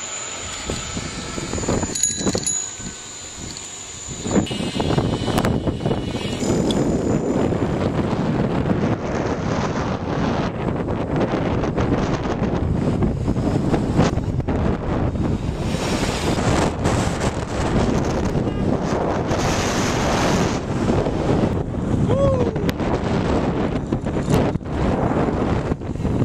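Wind buffeting the camera microphone on a moving bicycle: a steady rushing noise that swells about four seconds in and carries on.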